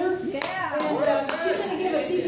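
Scattered hand claps from the audience, a few sharp claps in the first second or so, over people's voices.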